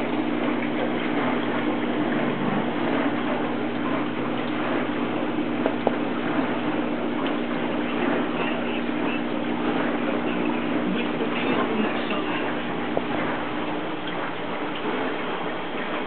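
Aquarium filter running: a steady rush of moving water with a low, even hum and a few soft clicks.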